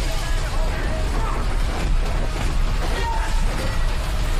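Action film trailer soundtrack: loud, dense music with voices in the mix and a heavy, steady low end.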